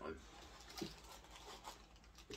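Faint handling of a small boxed, plastic-wrapped collectible figure: a few light crinkles and taps as it is turned over in the hands.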